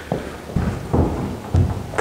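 About four dull thumps, roughly half a second apart.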